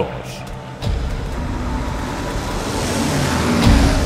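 P-51 Mustang fighter planes' piston engines and propellers roaring in a flyby, growing steadily louder from about a second in as the planes approach.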